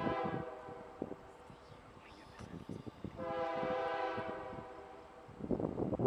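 Distant CSX freight locomotive's multi-chime air horn sounding as the train approaches: a short blast at the start, then a longer one of about two seconds from about three seconds in. A loud rush of noise comes just before the end.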